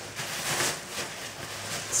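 Rustling of a shopping bag as a purse stuck inside it is tugged out, loudest about half a second in.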